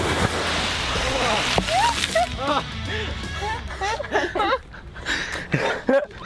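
A rush of noise, then several excited voices shouting and whooping over background music.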